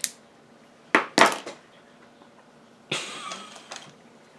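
A click, then two sharp knocks about a second in and a short clatter around three seconds: small hard makeup containers being handled and set down on a desk.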